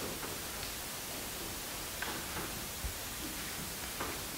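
Steady hiss of a quiet room's background noise, with a faint click about two seconds in and a soft low thump just before three seconds.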